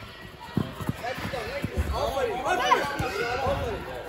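Several children shouting and calling out over one another, loudest in the second half, mixed with a few dull thumps of a soccer ball being kicked on turf.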